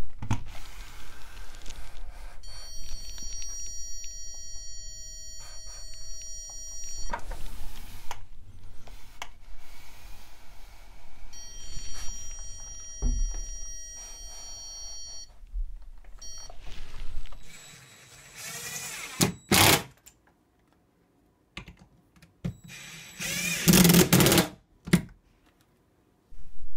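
Handheld electronic stud finder sounding a steady electronic tone as it passes over a stud behind the drywall, held for about four seconds and then again for about four seconds. Near the end come a few short, louder bursts of noise.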